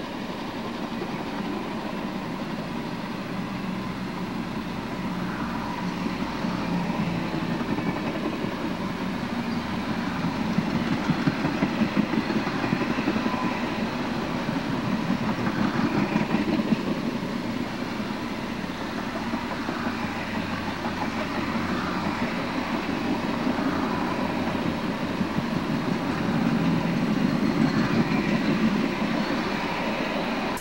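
Passenger train cars rolling past at speed: the steel wheels run on the rails with a steady rumble and a dense rattle of clicks, swelling and easing as the cars go by.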